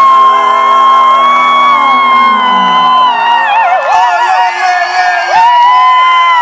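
Loud live pop-band music with a high lead melody held in long notes, a wavering run in the middle and a second long note near the end, over the band.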